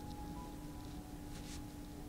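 Hands pressing and sliding over a towel on a person's back during a massage: a soft, brief fabric rustle about a second and a half in, over a steady low hum.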